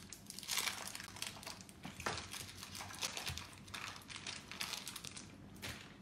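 Plastic wrapping crinkling and rustling in irregular crackles as it is handled around a piece of sugar paste.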